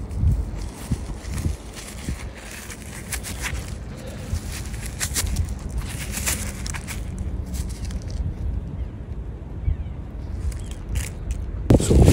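Rustling and crackling of loose soil and dry leaves being handled with gloved hands, with scattered sharp crackles over a low rumble of handling or wind on the microphone.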